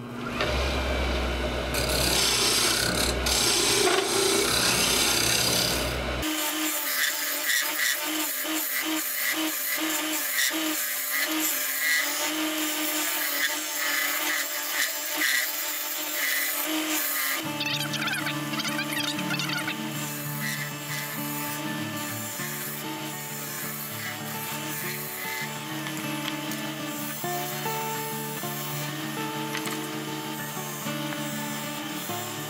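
Wood lathe spinning a hardwood blank while a hand-held turning tool scrapes and cuts it, a steady rasping rub of steel on wood. About six seconds in, background music with a beat comes in over it, turning to held notes later on.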